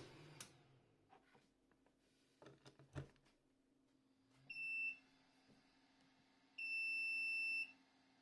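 JGAurora A5 3D printer's buzzer beeping as power is restored: a short beep about halfway through, then a one-second beep of the same pitch near the end. Under the beeps is a low steady hum of the printer running, and before them a few clicks and knocks as the plug is handled at the wall socket.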